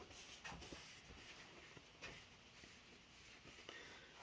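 Near silence: room tone with a couple of faint, short clicks.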